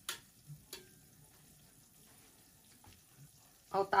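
Faint sizzling from a stovetop raclette grill heating cheese over a gas burner, with a few sharp clicks in the first second.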